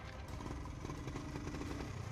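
1978 Honda Trail 90's small single-cylinder four-stroke engine running faintly and steadily as the bike rolls slowly forward.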